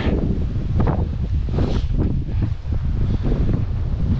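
Wind buffeting the camera's microphone in gusts, a loud low rumble that swells and eases.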